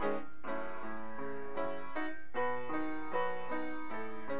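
Small wooden upright piano played solo: a continuous run of struck chords and repeated notes, each ringing on under the next, with a brief lull about two seconds in.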